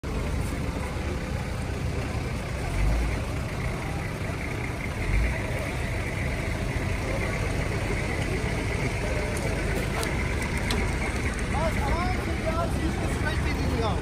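Off-road vehicle engine idling steadily, with two low bumps on the microphone a few seconds apart and people's voices beginning near the end.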